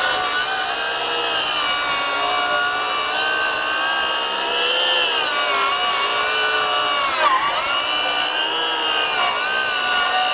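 DeWalt DCS570 20V 7-1/4-inch cordless circular saw with a thick-kerf blade running under load, ripping lengthwise through dimensional lumber. Its motor whine sags and recovers as the blade works through the wood, with one deeper dip about seven seconds in.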